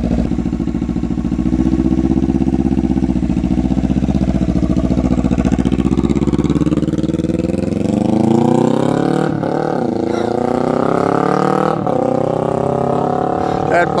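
Kawasaki Ninja 300's parallel-twin engine through its new muffler, running low and steady and then revving up as the bike rides off, the pitch climbing with two brief dips along the way.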